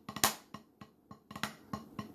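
Wooden drumsticks striking a drum practice pad: a loud pair of taps, a lull of about a second with only faint taps, then a quick run of strokes near the end.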